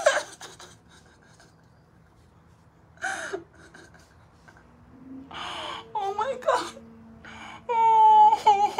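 A woman gasping and whimpering in distress: short breathy gasps a few seconds apart, a wavering whimper about six seconds in, and a held whining note starting just before the end.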